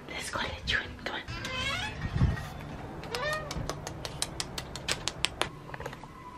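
Domestic cat meowing a few times, with pitched calls that rise and fall. Near the end comes a quick run of light clicks, about five a second.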